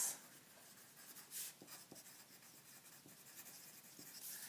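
Pen writing on a paper worksheet: faint short strokes and scratches as words are written, the loudest about a second and a half in.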